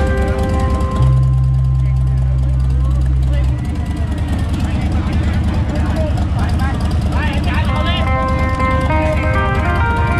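Loud amplified live music from a sound cart's loudspeakers, with keyboard parts and a heavy bass note held for a couple of seconds early on, over people talking.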